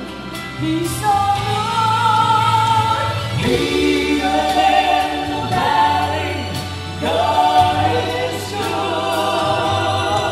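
Gospel vocal trio singing in close harmony over keyboard accompaniment, holding long notes with vibrato.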